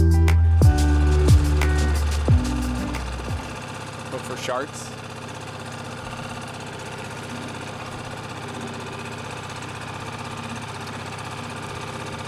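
Background music with a heavy beat that stops about three and a half seconds in, followed by a dinghy's small outboard motor running steadily underway.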